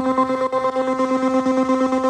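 Korg Volca Keys synthesizer holding one note through an Iron Ether FrantaBit bit-crusher pedal. The tone comes out gritty and rapidly stuttering, about a dozen pulses a second.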